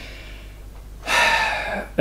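Quiet room tone for about a second, then a man's sharp audible in-breath through the mouth, lasting just under a second.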